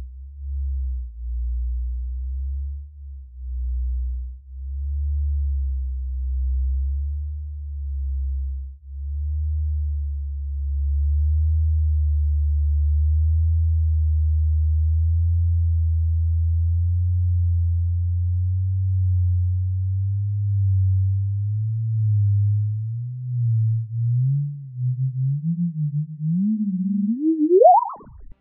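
Sonified gravitational-wave signal of the black hole merger GW200129, stretched out in time into a deep hum. The tone swells and fades over and over as the precessing orbits wobble, and creeps slowly up in pitch. Near the end it sweeps sharply upward in a rising chirp as the two black holes merge.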